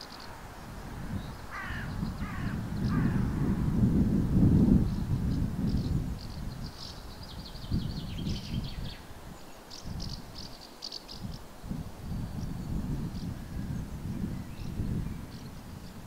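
A crow cawing three times about two seconds in, with small birds chirping faintly in the middle, over a low rumble that is loudest around four to five seconds.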